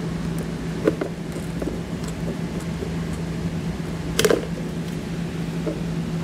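Hand snips cutting through a thin plastic underbody panel: a few sharp snips, the loudest about four seconds in, over a steady low hum.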